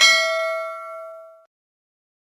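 Notification-bell ding sound effect from a subscribe-button animation: one bell-like ring that fades out about a second and a half in.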